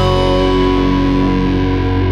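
Instrumental music with no singing: an electric guitar through effects holds long, sustained notes over a steady bass.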